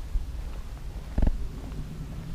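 Uneven low rumble of wind buffeting the microphone, with one short, louder thump a little after a second in.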